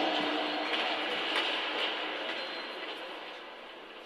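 Ice arena background noise: a steady hubbub of the hall and crowd, fading gradually throughout.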